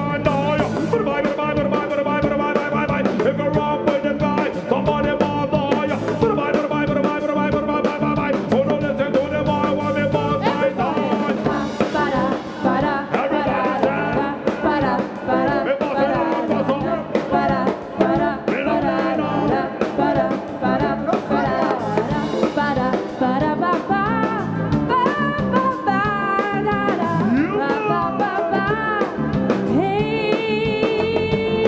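Live band playing, with several singers singing together over keyboard and drums.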